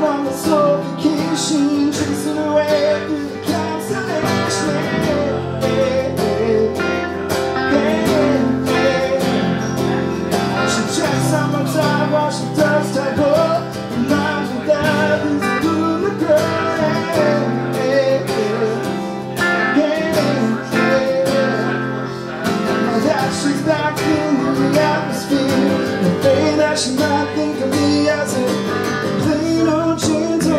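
Live music: a strummed acoustic guitar with a Stratocaster-style electric guitar playing wavering lead lines over it, an instrumental passage of the song.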